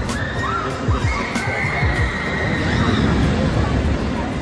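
Riders screaming on a swinging pendulum thrill ride: several high voices rising and falling, with one long scream held for about two seconds, over background music and a low rumble.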